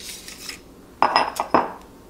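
Metal T-bar of an Incra stainless steel protractor being slid off the protractor head and set down. A brief scrape, then a sharp metallic clink with a short ring about a second in, followed by a couple of lighter clicks.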